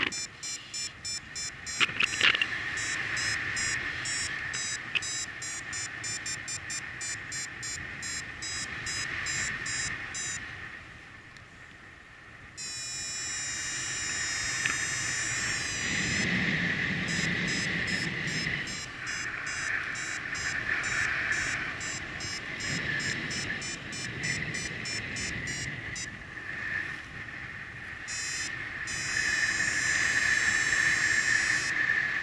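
Paragliding variometer beeping in quick, even pulses over wind rush: the climb tone that signals the glider is rising in lift. The beeping drops out for a couple of seconds near the middle.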